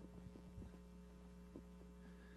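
Near silence: room tone with a steady low electrical hum.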